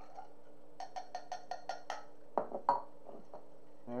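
Cocktail shaker and glass clinking as a shaken drink is poured out over ice: a quick, even run of about seven light clinks, then two louder knocks a moment later.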